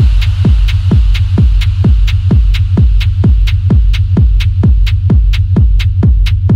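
Dark techno track: a steady four-on-the-floor kick drum at about two beats a second over a continuous deep bass hum, with faint high ticks above.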